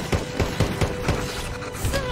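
Rapid rifle gunfire, about four or five shots a second, over a film score with a long held note.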